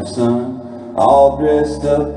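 A live band playing a country ballad with a man singing over guitar. A low, steady bass note comes in about a second in.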